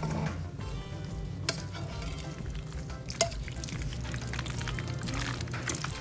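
Soft background music over the wet stirring of cooked penne into a thick creamy sauce in a skillet, with a few light clicks of the utensil against the pan.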